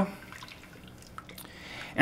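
Wooden spoon stirring thick, starchy risotto in a stainless steel pressure-cooker pot: faint wet stirring with a few soft ticks.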